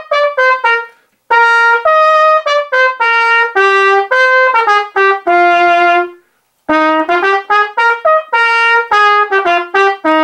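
Solo trumpet playing a simple march melody in 2/4 march tempo, one note at a time with short accented notes. It pauses briefly twice, about a second in and about six seconds in, between phrases.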